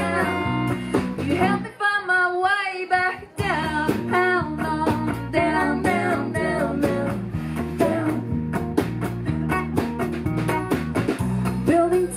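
Live folk trio of acoustic guitar, electric bass and drum kit playing, with a wavering sung melody line over them. About two seconds in, the bass and drums drop out for roughly a second and a half before the full band comes back in.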